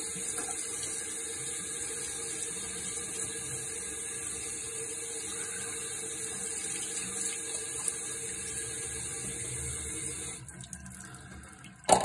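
Water running steadily from a sink tap over a chainsaw air filter as it is rinsed of soap. The flow stops about ten seconds in.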